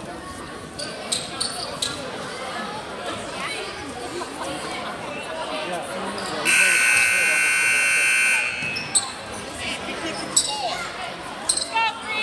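Gym scoreboard buzzer sounding one steady blast of about two seconds, a little past the middle, over the sound of basketballs bouncing on a hardwood floor and voices in a large hall.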